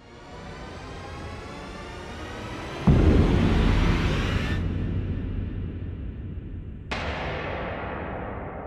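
Logo-sting sound effect: a rising whoosh swells for about four seconds, with a deep hit about three seconds in, then a second sudden hit near the end that rings out and fades.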